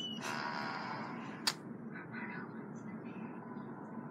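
Soundtrack of an animated cartoon playing back: a hissing rush of noise near the start, then a single sharp click about a second and a half in, over a faint low background.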